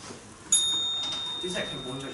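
A small bell struck once about half a second in, ringing on with a clear high tone that slowly fades: the timekeeper's signal for the start of a debate speech. A voice starts up faintly near the end.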